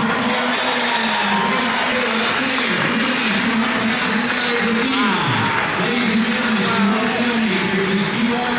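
A man's voice talking continuously over the public-address system of a large auction hall, with a crowd applauding under it.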